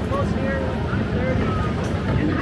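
Several people talking and exclaiming in the background, fairly high-pitched voices, over a steady low rumble.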